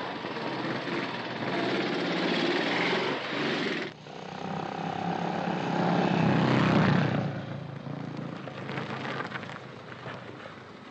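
Motorcycle engines running as the machines ride off along a road. The sound builds to its loudest about six to seven seconds in, then eases away.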